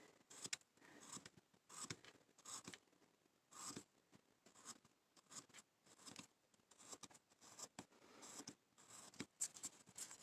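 Faint short scraping cuts of a V-tool slicing through basswood, irregular strokes roughly every half second to a second.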